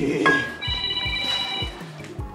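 A mobile phone ringtone: a bright electronic ring about a second long, repeating, over background music with a steady low beat.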